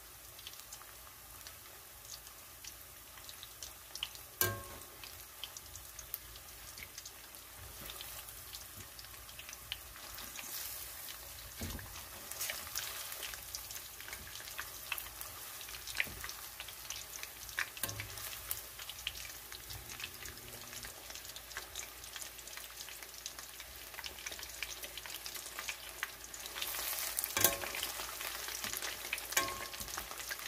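Flour-dredged chicken pieces deep-frying in hot oil in a stainless steel pan: a steady sizzle with scattered pops and crackles. There is one sharp click about four seconds in, and the frying grows louder near the end as a wire skimmer stirs and turns the pieces.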